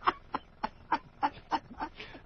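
A man laughing hard in short, evenly spaced bursts, about three a second, like a cackle.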